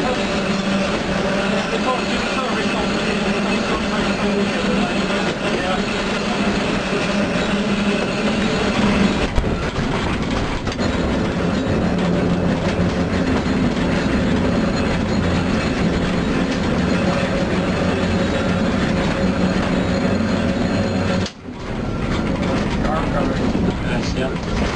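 Vintage electric interurban car running along the rails, its traction motors humming steadily over the noise of the wheels on the track. The sound drops away briefly about three seconds before the end.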